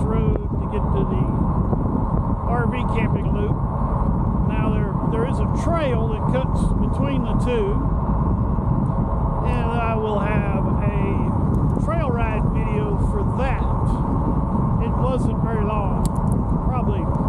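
Steady wind and road rush on a helmet-mounted camera as an e-bike rolls along a paved road. An indistinct voice-like sound comes and goes over it.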